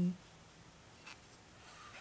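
Faint rustling and scratching of a 3 mm metal crochet hook pulling double-knit yarn through stitches while half double crochet is worked, with a small tick about a second in.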